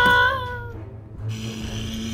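A high-pitched voice drawn out in a whining wail that trails off within the first second, then a quieter steady low hum with hiss.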